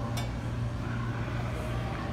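Indoor venue background noise dominated by a steady low hum, with a short click just after the start.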